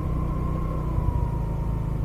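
Rusi Gala 125 scooter's single-cylinder four-stroke engine running steadily while riding at low speed, with a thin steady whine over the low engine and road noise.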